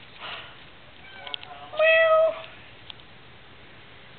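A domestic cat meowing: a faint call about a second in, then one louder, level-pitched meow about half a second long.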